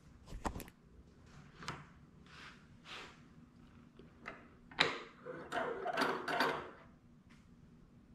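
Quiet workshop handling sounds: a wooden board and bench dog being shifted on a wooden benchtop, and an inset tail vise being worked by its metal handle, giving scattered light knocks, clicks and short scrapes that bunch together about five seconds in.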